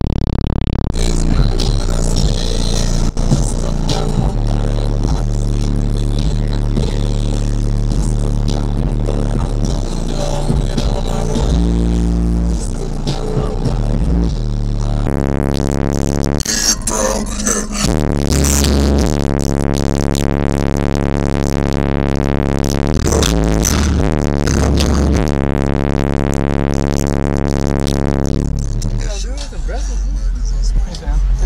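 Bass-heavy electronic music played through a car audio system with a single 15-inch DC Audio XL subwoofer on a Crescendo 2K amplifier, heard from inside the car's cabin. Deep held bass notes change pitch every second or so, and the music thins out near the end.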